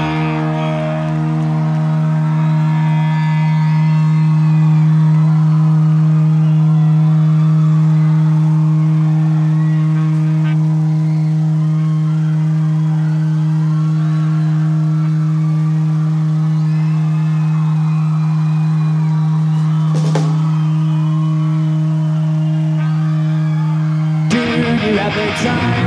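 Electric guitar feedback through the amplifier: one low note held as a steady, unbroken drone, with a single click about twenty seconds in.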